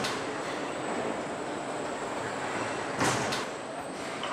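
Steady machinery noise of a car assembly line, with a short loud burst right at the start and two more close together about three seconds in.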